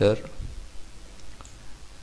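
A single faint computer mouse click about one and a half seconds in, over low room noise.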